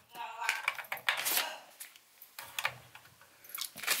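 A pet bird chattering in short, irregular bursts, with a few faint clicks and handling sounds.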